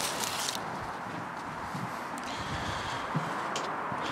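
Rustle of a fleece plant cover being handled over a potted palm, then soft footsteps over a steady outdoor hiss, with a small click near the end.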